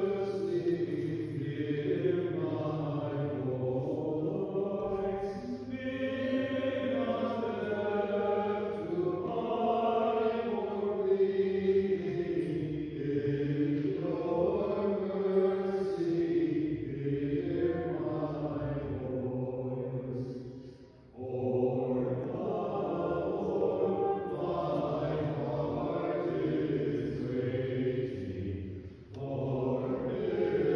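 A small mixed group of cantors singing Byzantine chant from the Panachida memorial service in slow, sustained phrases, with a short breath pause about 21 seconds in and another near the end.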